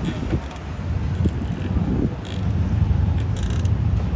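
Outdoor street-side ambience: a steady low rumble with faint, indistinct voices and a few light clicks.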